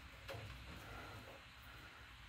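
Near silence: faint low room hum, with one faint click about a third of a second in.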